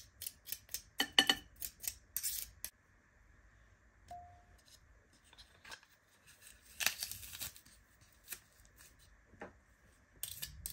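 Metal garlic press crushing garlic cloves over a ceramic bowl: a run of sharp clicks and scrapes in the first three seconds, then quieter, with a second cluster about seven seconds in.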